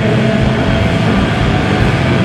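Live rock band playing loud, a dense sustained wall of heavily distorted electric guitar over drums, amplified through the PA.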